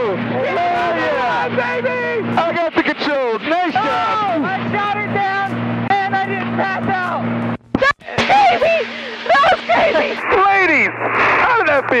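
Excited shouting and laughing voices in an aerobatic plane's cockpit over the steady drone of the Extra 330's engine, with an abrupt cut near the middle.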